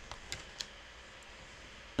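A few faint clicks and taps in the first half-second or so as the plate of a Stamparatus stamping platform is pressed down to stamp the card stock.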